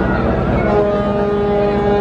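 A river vessel's horn sounds one long, steady blast, starting under a second in and holding more than one tone at once, over the steady low drone of boat engines.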